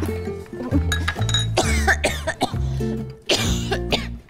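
A person coughing in bouts, choking on food, over light comedic background music with a bouncing bass line.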